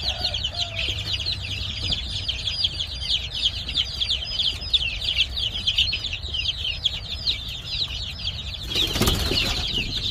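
A brood of chicks peeping: a dense chorus of high, overlapping peeps, each falling in pitch. About nine seconds in there is a brief burst of scuffling noise.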